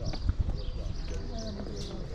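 Outdoor crowd background of other visitors talking faintly, over a steady low rumble, with a couple of sharp knocks about a quarter second in.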